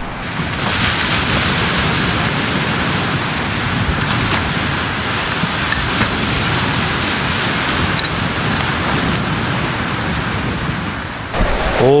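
Sea surf: waves breaking on the shore, heard as a steady, even rushing wash.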